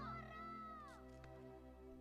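A child's drawn-out cry for help fading away as a quieter echo, its pitch falling off about a second in, over soft sustained background music.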